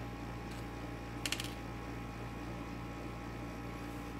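Steady low electrical hum, with a brief cluster of light clicks a little over a second in as taped resistors and LEDs are picked up and handled.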